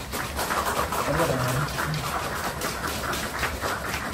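Audience applauding: a steady, dense clatter of many hands clapping.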